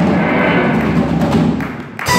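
Live rock band playing electric guitars, bass guitar and drum kit, with a heavy low end. The sound falls away briefly near the end.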